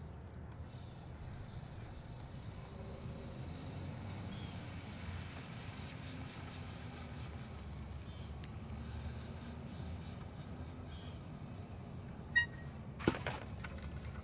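Wind rumbling on the microphone, with two sharp knocks near the end.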